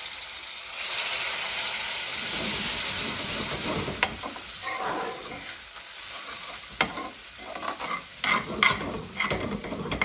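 Spice paste sizzling loudly in a hot metal pan as freshly added water boils off, the sizzle dying down after about four to five seconds. A long metal spoon then stirs and scrapes the pan, with sharp clicks of spoon on pan, most of them in the last few seconds.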